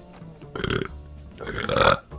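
A man burping twice: a short, rough one about half a second in, then a longer, louder one near the end. Faint background music runs underneath.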